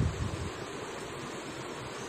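Steady background hiss, a pause with no speech.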